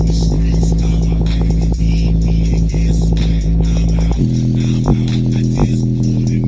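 Bass-boosted electronic music played loud through a JBL Xtreme 2 portable Bluetooth speaker, a deep sustained bass driving its passive radiator. About four seconds in, the bass line changes to a different note.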